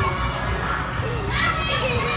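Children's voices calling and playing in a busy trampoline park, over background music and a steady low hum.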